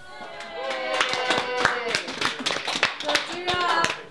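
A small group applauding with many quick claps, and several voices calling out over the clapping.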